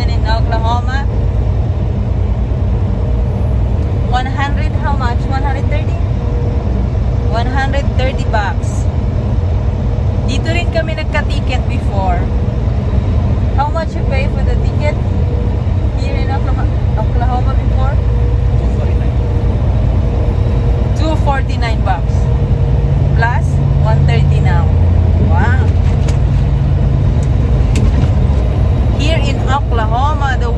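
Steady low rumble of a semi-truck's diesel engine and road noise heard inside the cab while driving, growing a little louder for a few seconds past the middle.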